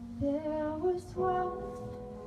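Congregational worship song: a woman's voice singing a short phrase that climbs in steps, then a held note, over sustained keyboard chords.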